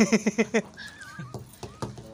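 Men laughing heartily: a loud burst of rapid 'ha-ha-ha' pulses at the start, trailing off into softer laughter and voices.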